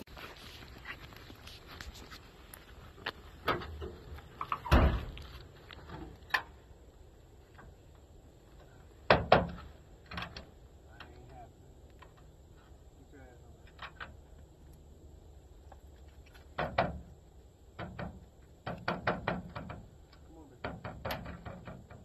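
Scattered knocks, clicks and a few louder thumps from handling at a pickup truck's tailgate and dog box, with a hound moving about. The thumps come about five, nine and seventeen seconds in, and a quick run of clicks follows near the end.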